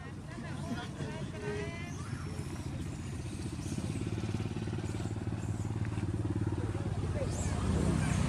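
A motor vehicle engine running with a steady low drone that grows louder from about three seconds in, as if approaching. A few faint voices are heard in the first two seconds.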